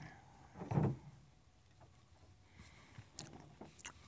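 Faint handling sounds: fingers scooping leather cream from a plastic jar and rubbing it into leather tie strings. A soft knock comes just under a second in, and a few faint ticks follow later.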